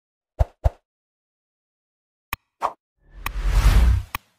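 Sound effects of a subscribe-button animation: two quick pops, a sharp click and another pop, then a whoosh that swells to its loudest near the end.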